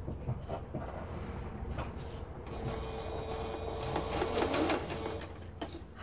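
Singer computerized sewing machine stitching a short stretch of seam, its motor humming steadily for about two and a half seconds in the middle, with light clicks of fabric handling before it.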